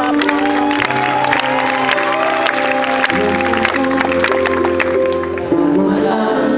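Live band music amplified through a concert PA: sustained keyboard chords over a bass line that changes about three seconds in, with scattered audience clapping and crowd noise.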